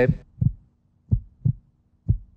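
Suspense heartbeat sound effect under a countdown decision: three low, dull thumps, the last two in a quick pair.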